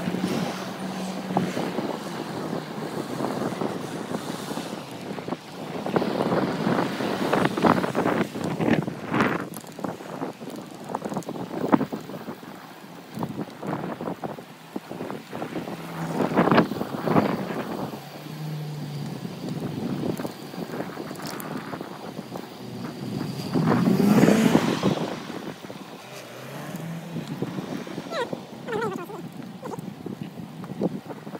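Wind rushing over the microphone of a phone mounted on a moving bicycle, with road noise and a few louder swells, the biggest about three-quarters of the way through.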